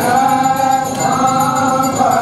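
A group of voices singing a Hindu aarti hymn during the lamp-waving worship, a steady sung melody without a break.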